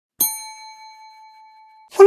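A single bell-like ding sound effect on the intro title card: struck once, it rings on with a clear, bright tone that slowly fades and is cut off just before the end.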